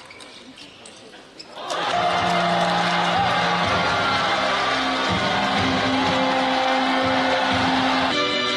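A table tennis ball clicking off bat and table a few times in a quiet hall, then about two seconds in loud music with long held notes starts abruptly and carries on.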